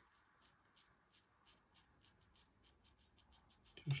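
Faint, rapid strokes of a damp watercolour brush on paper, about four short scratchy dabs a second, softening paint edges.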